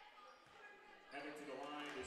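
Quiet gymnasium during a stoppage: low crowd murmur and faint voices from about a second in, with light bounces of a basketball on the hardwood court.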